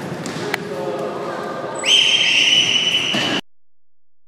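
Referee's whistle blown in one long shrill blast starting about two seconds in, over players' voices and a ball knocking on the wooden floor in a large echoing sports hall. The sound cuts off suddenly after the blast.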